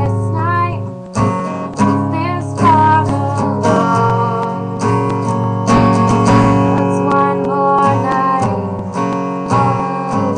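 Acoustic guitar strummed steadily, with a woman singing over it in long, wavering notes.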